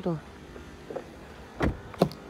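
A car door of a 2006 Honda Civic sedan shut once with a single short thump, a little over one and a half seconds in.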